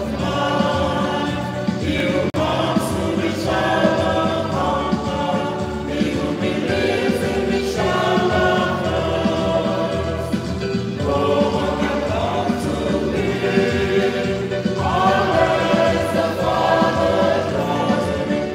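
Choir singing a hymn in a church, in sung phrases over a steady accompaniment.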